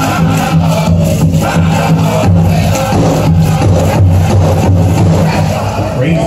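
Powwow drum group: a big drum struck in a steady beat, about three strokes a second, with voices singing over it.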